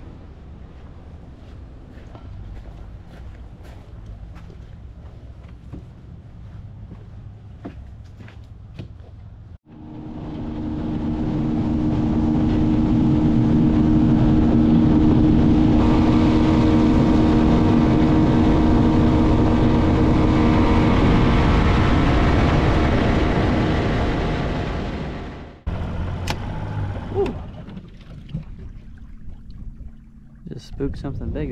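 Small skiff's outboard motor running at speed: a loud steady drone with a rush of noise, building up over about two seconds from about a third of the way in and dying away about four seconds before the end. Before it, a quieter low rumble with a few clicks.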